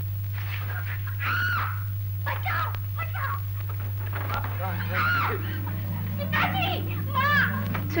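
A woman's cries heard from another room: several drawn-out calls that rise and fall in pitch, over a steady low hum in the old film soundtrack.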